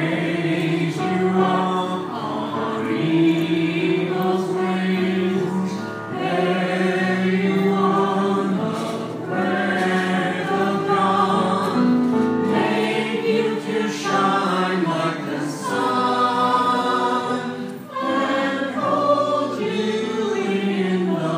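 A choir singing in harmony, in phrases of a few seconds each with short breaths between them.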